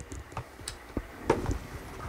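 Irregular light clicks and knocks of a plastic powered air-purifying respirator (PAPR) blower unit being handled and turned over in the hands.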